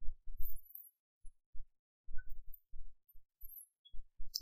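A dozen or so short, dull low thumps at irregular spacing, quieter than the narration.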